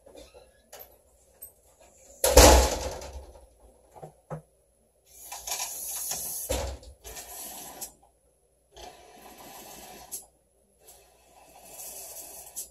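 Water rushing through a newly soldered copper water pipe in several separate spurts as a valve is opened and closed to check the joint for leaks. A sudden loud rush comes about two seconds in and fades over a second.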